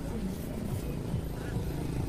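A low, steady rumble of vehicles outdoors, with faint music underneath.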